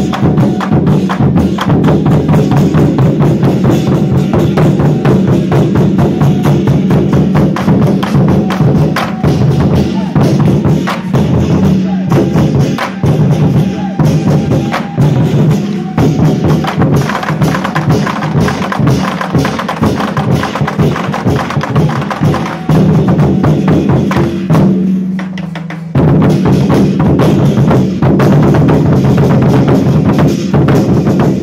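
A troupe of red Chinese barrel drums beaten hard with sticks in a fast, dense rhythm. Late on, the beating thins and softens for a couple of seconds, then comes back in full all at once.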